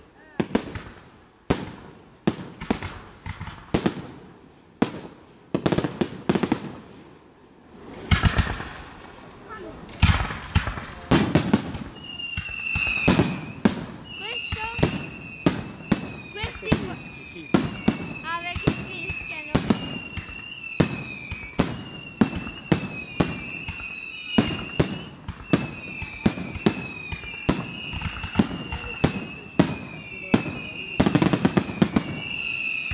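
Aerial fireworks shells bursting in quick succession, about one or two sharp bangs a second at first, growing denser after about ten seconds. From then on, short, slightly falling whistles repeat about once a second among the bangs.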